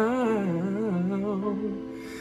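A man's solo singing voice holding the word "now" as a long, wavering note with vibrato, bending in pitch and fading away near the end.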